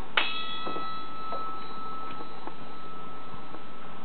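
A brass bar struck once, ringing with one clear tone at about 1330 Hz that fades away over two to three seconds, its higher overtones dying out first. This is the bar's resonant note, whose pitch is being measured to find the speed of sound in brass.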